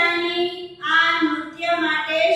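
A girl singing unaccompanied in a sing-song melody, holding each note for about half a second before moving to the next.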